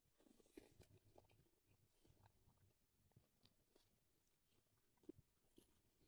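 Very faint close-up chewing of braised meat: soft, irregular wet smacks and mouth clicks as a person bites and chews, with a few slightly sharper clicks scattered through.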